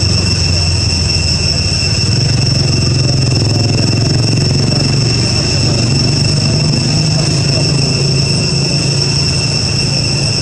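A steady outdoor drone: a low rumble with several steady high-pitched tones held above it, like a chorus of cicadas or other insects.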